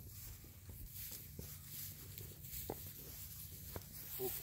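Sheep jostling close around a person on grass: faint rustling and a few light ticks over a low steady rumble.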